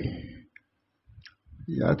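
A man's voice giving a sermon trails off into a short pause that holds a couple of faint clicks, then resumes near the end.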